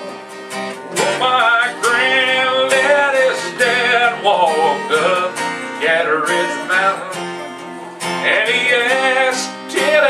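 Two acoustic guitars strummed together in a live song, with a singing voice coming in about a second in and pausing briefly around seven seconds.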